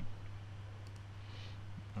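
A single faint computer mouse click about a second in, over a steady low hum.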